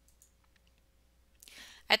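Near silence with a few faint clicks, then a soft breath in and a voice beginning to speak near the end.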